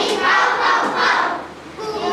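A class of children singing or chanting together in unison, a Maya-language song read from the board; the chorus drops away briefly just before the end, then comes back.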